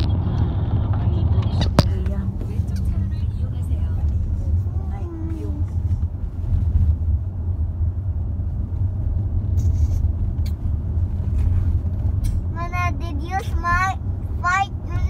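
Steady low road and engine rumble inside a moving car's cabin, with a single sharp click about two seconds in and a child's high voice near the end.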